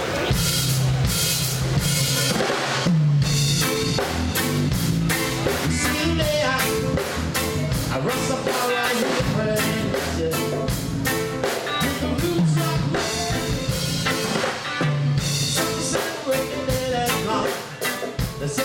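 Live reggae band playing the instrumental opening of a song: a steady drum-kit rhythm under a moving bass-guitar line, with guitar.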